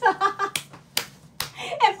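A few words of talk, then three sharp clicks about half a second apart, then talk starts again near the end.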